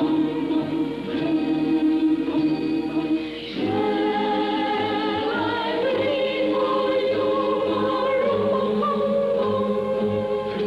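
Soundtrack music: a choir singing slow sustained chords over a steady soft low drum beat, a little under two beats a second.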